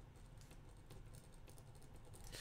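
Faint computer keyboard typing: a loose run of quiet key clicks.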